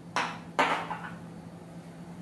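A small glass seasoning jar being handled and put back: two brief scraping, clinking noises about half a second apart.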